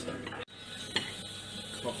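Knife and fork working on a ceramic plate as a kofta is cut, with a single click of metal on the plate about a second in, over a steady hiss of restaurant background noise.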